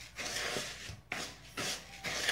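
Spoon scraping and rubbing around a white plastic bowl while sugar is stirred in, in repeated strokes about two a second.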